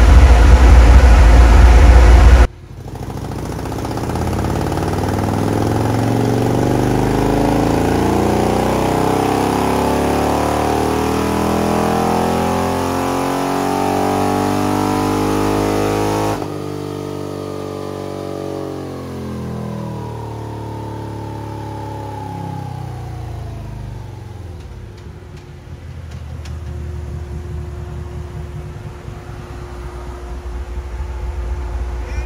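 A loud low rumble that cuts off abruptly, then a Harley-Davidson 114-cubic-inch Milwaukee-Eight V-twin through a Chromeworks 2-into-2 exhaust doing a dyno pull: engine pitch climbing steadily for about fourteen seconds, then falling as the engine is let off and slows back toward idle near the end.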